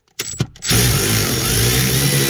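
Power tool driving a socket on a long extension to loosen a seat-mounting bolt in a car floor. It gives a short blip, then runs steadily and loudly.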